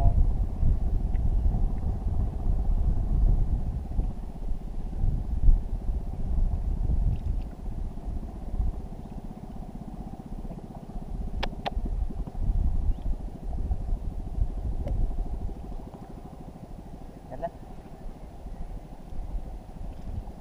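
Wind rumbling on the microphone over open water, rising and falling, with a faint steady drone beneath it and one sharp click about eleven seconds in.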